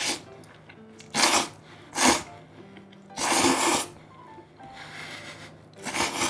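A person slurping thick yakisoba noodles in five loud sucking bursts, the longest about three seconds in, with faint background music underneath.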